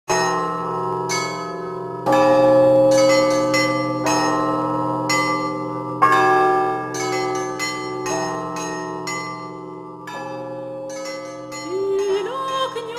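Church bells ringing, many strikes at uneven intervals, each tone ringing on as the next one sounds. Just before the end a singing voice slides in.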